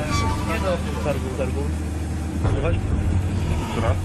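Low, steady rumble of a vehicle engine, with men's voices talking over it in short bursts.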